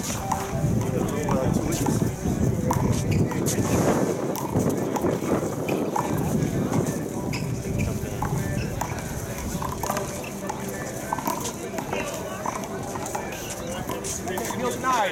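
Background chatter of several people talking at once, with scattered short sharp knocks.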